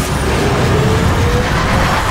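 Loud, steady rumble and hiss of a spacecraft's engines in a film sound mix, with a faint tone slowly rising in pitch.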